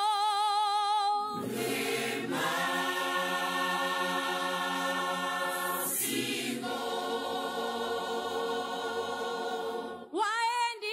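Unaccompanied choir singing long held chords. A single voice holds a note with vibrato, and the full choir comes in about a second in, changing chord twice.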